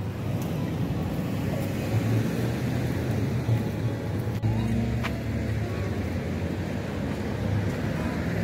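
Steady road traffic: the low running of car engines and tyre noise, swelling slightly around the middle as a car passes closer.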